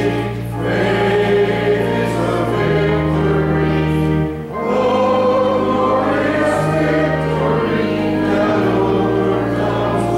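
A hymn sung by many voices together over sustained organ chords, the bass notes changing every couple of seconds, with short breaks between sung phrases.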